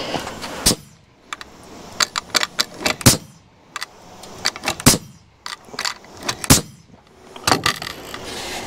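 Pneumatic nail gun driving nails into the wooden roof framing: a string of sharp shots at uneven spacing, a few of them much louder than the rest.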